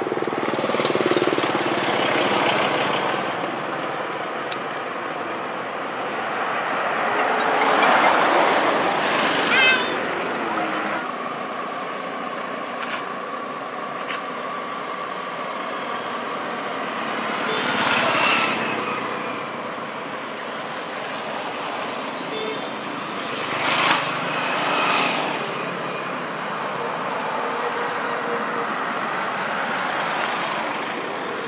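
Road traffic: a steady hum, with several passing vehicles swelling up and fading away.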